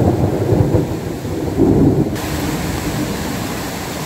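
Thunder rumbling over heavy rain, the low rumble loudest in the first two seconds and then settling into a steady rain hiss.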